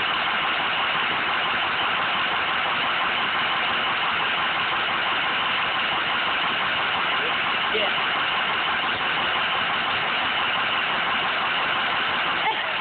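A car engine idling steadily under a constant hiss-like noise that does not change.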